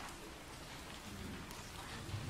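Faint crackly rustle of sheet music and performers shifting in place, with no music playing.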